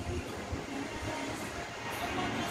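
Wind buffeting the microphone: a low, unsteady rumble over a steady wash of noise.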